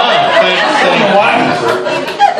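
Several people talking at once in a large room, overlapping voices that run together without clear words.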